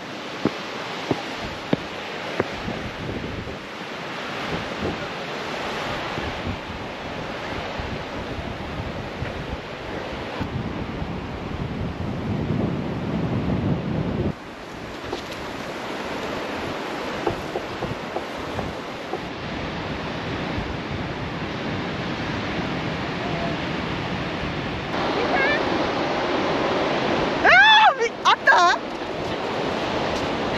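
Ocean surf washing on a sandy beach, with wind buffeting the microphone. Near the end a person's high call with a sliding pitch rings out over the surf, the loudest sound here.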